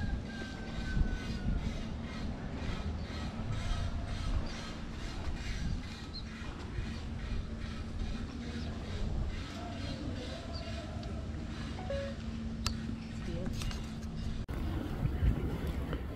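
Ambience of a steady low hum and rumble, with faint, indistinct voices in the background.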